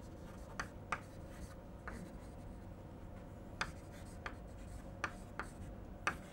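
Chalk writing on a chalkboard: a faint, irregular string of short taps and scratches as words are written out.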